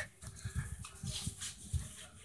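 Faint low thumps of footsteps and handling noise from a phone camera being carried through a room.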